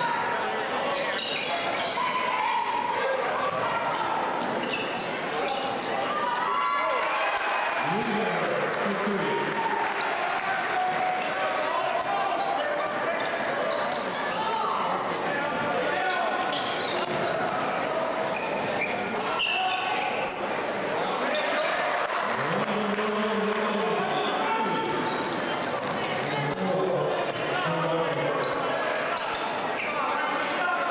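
Basketball dribbling and bouncing on a hardwood court during a game, with a crowd's voices and shouts echoing through a large gym.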